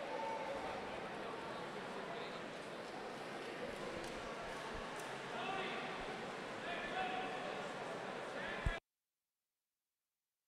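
Steady murmur of many spectators talking indistinctly around an indoor pool, with no single voice standing out. A short thump comes just before the sound cuts off abruptly about nine seconds in.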